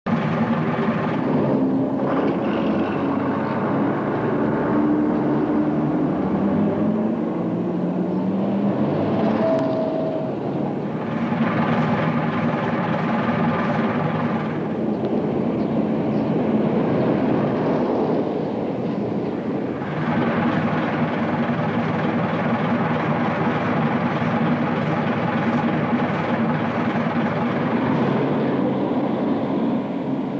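Heavy diesel bus engine running steadily, its pitch and character shifting every few seconds, with a brief rise in engine note early on.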